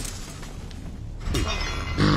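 Action-film sound effects of giant robots fighting: metal crashing and shattering over a low rumble, with a sharp impact about one and a half seconds in, after which the sound grows louder.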